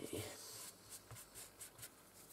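Ball-tipped modelling tool rubbing and scraping over a thin polymer clay petal on a foam pad, thinning and smoothing its edge: faint, with a soft scratchy hiss at first, then several light ticks.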